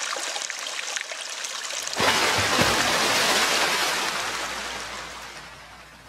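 Water splash sound effect: a light trickling, then a sudden louder rush of splashing water about two seconds in, with a low rumble under it, fading away toward the end.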